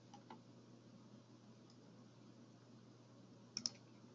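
Near silence over a faint steady hum, broken by a few computer clicks: two faint ones just after the start and a louder double click about three and a half seconds in, as the screen is switched from the poll to the slides.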